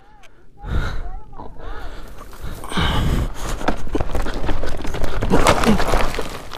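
A dirt bike and rider going down on a rocky, brushy slope: scraping, rustling through dry brush and rocks clattering in many small knocks, with rumbling handling noise on the camera microphone. A few short vocal grunts come in the first two seconds.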